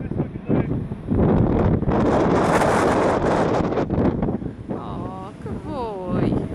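Wind buffeting the microphone in heavy gusts, loudest through the middle. Near the end a sheep gives a short, quavering bleat.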